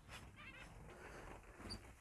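Near silence, with a few faint, short high chirps from small birds about half a second in and a single tiny peep near the end.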